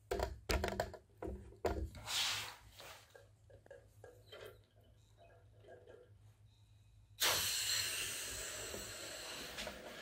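Handling clicks and breaths as the balloon on a 3D-printed balloon-powered car is blown up and held. About seven seconds in comes a sudden hiss of air rushing out of the balloon through the car's wide printed nozzle, fading over about three seconds as the car runs off.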